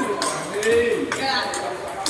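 Table tennis balls clicking off paddles and tables, a few sharp ticks about a second apart, over people's voices.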